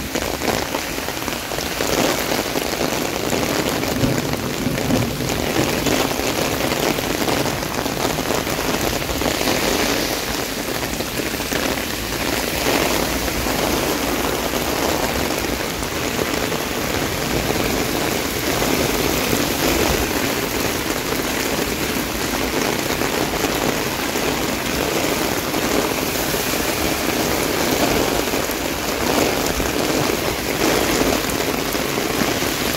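Heavy downpour of rain falling steadily and densely onto the street and paving.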